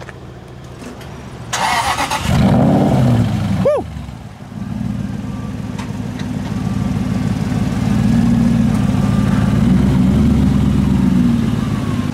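Aston Martin V8 Vantage with a custom exhaust starting up: the starter turns briefly, then the V8 catches with a loud flare of revs and settles into a steady idle.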